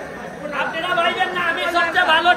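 Speech only: men talking among a crowd.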